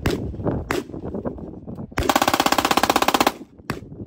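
Glock 23 .40-calibre pistol fitted with a switch (auto sear) firing one fully automatic burst lasting just over a second, the shots coming in a very fast even rattle. There are single gunshots about a second before the burst and just after it.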